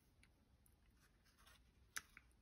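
Near silence, with faint paper rustling as blue glitter is funnelled from a folded sheet of paper back into its jar, and one small click near the end.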